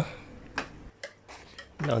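Two faint, sharp clicks of hard objects being handled: a clear plastic container set down in a plastic tub and long metal tweezers taken up.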